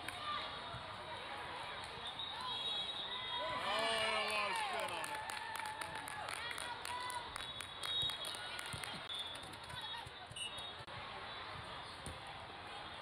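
Indoor volleyball game: players' voices in a reverberant hall, with a loud shout rising and falling in pitch about four seconds in. A run of sharp smacks follows over the next few seconds.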